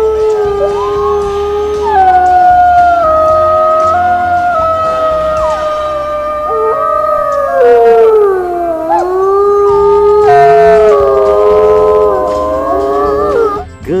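Wolves howling: long, drawn-out howls at several pitches at once, overlapping and slowly rising and falling.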